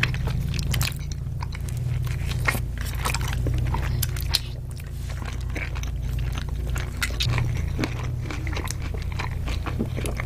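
Close-miked eating of tacos and burritos: biting, chewing and crunching, with frequent short mouth clicks, over a steady low hum.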